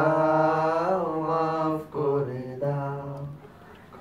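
Two men's voices chanting together in long, drawn-out tones that slowly rise and fall. The chant briefly breaks about halfway through and dies away near the end.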